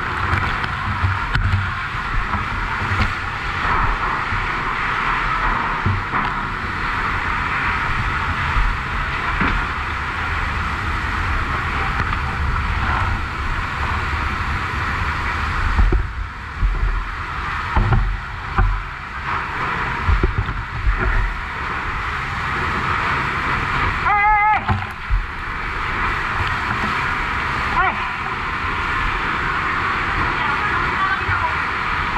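Steady hiss of a fire hose water jet spraying into a smoky burning building, over low rumbling, with handling knocks between about 16 and 19 seconds in. A short wavering tone sounds about 24 seconds in.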